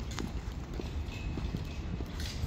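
High-heeled boots clicking on a paved sidewalk in a steady walking rhythm, about two steps a second, over a steady low rumble.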